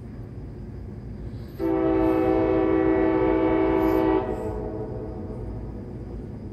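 Locomotive air horn of an approaching CSX freight train sounding one long blast of about two and a half seconds, a steady chord of several notes, over a steady low rumble.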